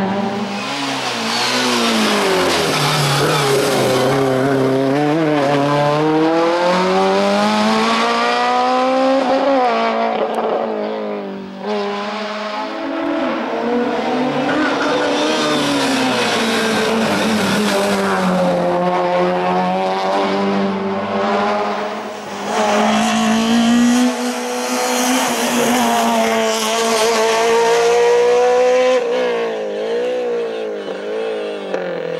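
Race car engine driven hard up a hill-climb course, revving high and climbing through the gears: the pitch rises and drops back again and again with each shift. There are brief lift-offs about a third and about two-thirds of the way through.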